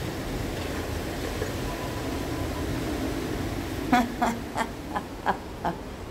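A steady wash of background noise, then from about four seconds in a woman laughs in a series of short bursts.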